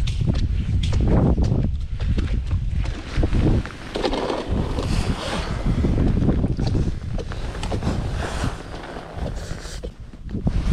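Wind buffeting the camera microphone, a gusty low rumble, with rustling and a few light knocks of gear being handled on the ice.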